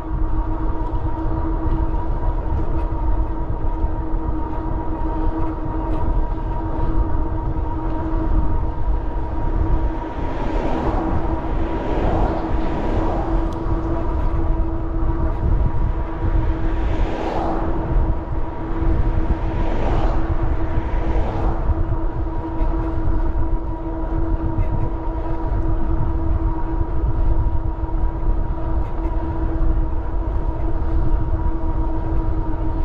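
Wind rumble and road noise from riding an electric bike on a street, with a steady whine throughout. Several passing cars rise and fade between about 10 and 22 seconds in.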